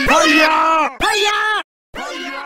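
A person's voice yelling: two long drawn-out shouts, the second ending abruptly, then a brief silence just before another shout begins.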